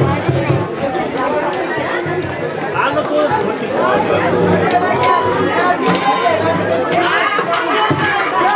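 Several people talking at once close by, a constant chatter of overlapping voices with no single voice standing out.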